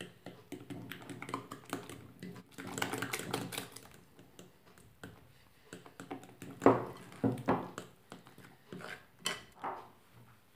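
A fork clicking and scraping against a ceramic bowl as flour is stirred into a wet batter, a rapid run of small ticks. Several louder knocks come in the second half.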